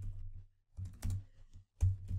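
Typing on a computer keyboard: three quick runs of keystrokes with short pauses between them, the last run the loudest.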